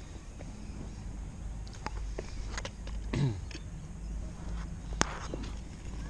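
Small handling noises: scattered light clicks and scuffs over a low steady rumble. A person makes a short low hum that falls in pitch about three seconds in, and there is one sharp click near five seconds.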